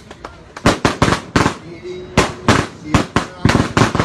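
Firecrackers going off: an irregular string of about a dozen sharp, loud bangs, starting just under a second in and continuing throughout.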